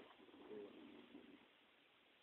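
Near silence: room tone, with a faint low sound in the first second and a half.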